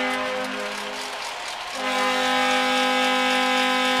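Arena goal horn sounding after a goal, a steady chord of stacked tones that fades about half a second in and comes back strongly just before the two-second mark.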